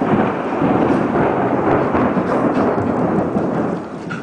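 A loud rumble of thunder that starts suddenly and dies away over about three and a half seconds.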